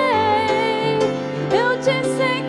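A woman singing with grand piano accompaniment. She holds one long note, then slides upward into the next note near the end.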